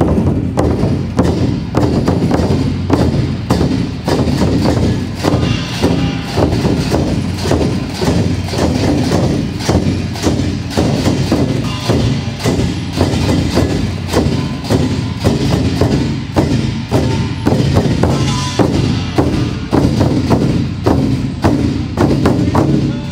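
A marching troupe beating large Chinese barrel drums with sticks in a fast, steady rhythm, several strokes a second.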